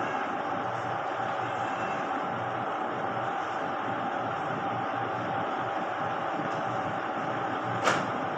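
Steady background hum and hiss of room noise, with one sharp click near the end.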